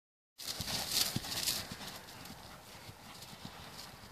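A mare's hooves thudding on grass at a canter, an uneven run of dull beats that is loudest in the first second and a half and then grows fainter, with a brief rushing hiss about a second in.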